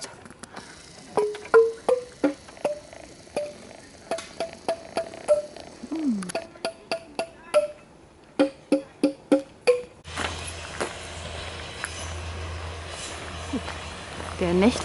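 A forest xylophone's wooden bars being struck, a long string of single dry notes at about three a second, ending in a quick run. About ten seconds in, this gives way to a steady low hum from a passing diesel regional train.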